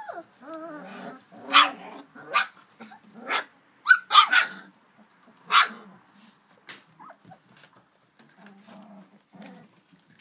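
A litter of young puppies play-fighting, giving about six short, high yaps in the first six seconds, with small growls between them and low growling near the end.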